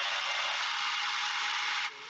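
A Ninja Nutri-Blender Plus 900-watt personal blender runs steadily as it blends frozen dragon fruit, which is already puréed smooth. The motor cuts off suddenly just before the end, when the cup is released.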